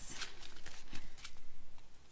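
Paper seed packets being shuffled and flicked through by hand, making a scattering of short, soft papery rustles and taps.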